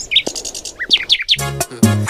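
Bird chirping: a quick series of short, high chirps, each falling in pitch, through the first part, with music or a voice cutting in near the end.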